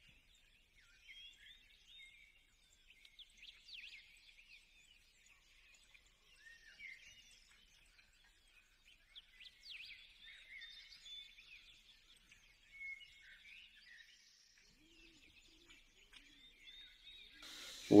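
Faint birds chirping in the background: many short, high calls, scattered and overlapping.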